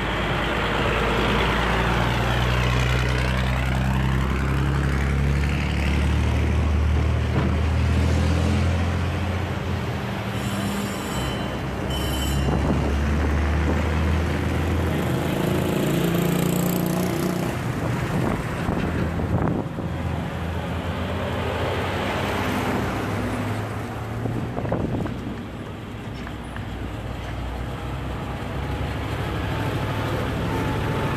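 Restored World War II military trucks driving slowly past one after another, their engines running with a deep drone that is loudest in the first half as a heavy truck goes by. A brief high-pitched tone sounds twice near the middle.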